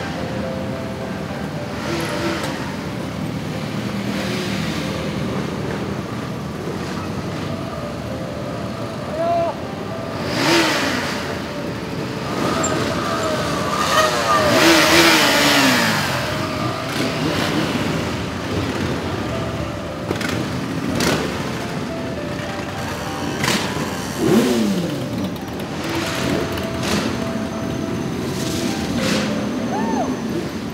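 A slow procession of many motorcycles riding past, their engines running together in a steady drone, with riders now and then revving and letting the revs fall away; the loudest rev comes about halfway through.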